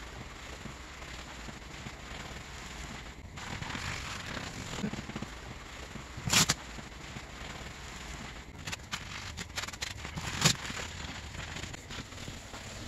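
A nylon scrubbing pad worked back and forth over a vinyl snowmobile seat cover lathered in foaming degreaser, a steady wet scrubbing. Two sharp knocks cut in, one about halfway through and one near the end.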